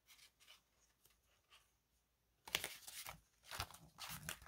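Paper prop banknotes rustling as they are handled and slid into a binder pocket. It is faint at first, with the loudest rustling a little past halfway.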